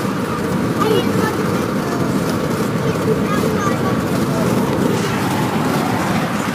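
Steady road and wind noise heard inside a moving vehicle's cabin at highway speed.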